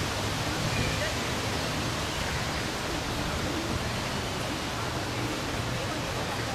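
Steady, even rushing noise with faint voices beneath it.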